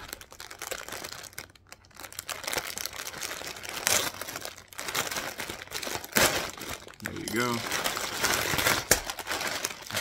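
Large clear plastic bag crinkling and tearing as it is pulled open by hand, the sealed bags of plastic bricks inside rustling and shifting, with a few sharper crackles along the way.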